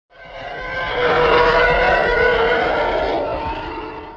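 A single long intro sound effect, dense and pitched, that swells up over the first second and a half, holds, then fades away near the end.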